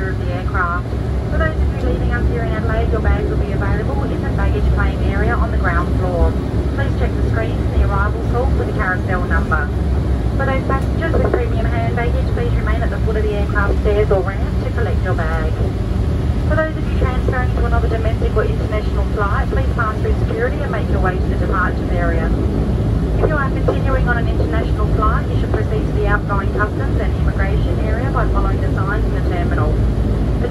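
Steady low drone of a Dash 8 Q300's turboprop engines and propellers heard inside the cabin while taxiing after landing, with a flight attendant's arrival announcement over the cabin PA running through it.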